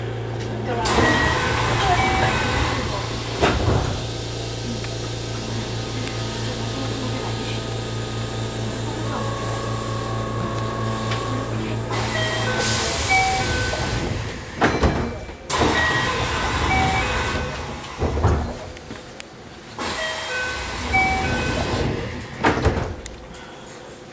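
Electric train standing at a station: a steady low electrical hum runs until about halfway and then cuts off, followed by a short burst of air hiss and several clunks. Short repeated electronic chime tones and a public-address voice sound over it.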